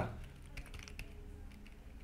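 Faint clicking of computer keyboard keys: a handful of separate keystrokes as a short word is typed.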